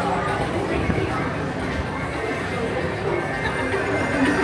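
Indistinct voices over background music, a continuous busy mix with no clear words.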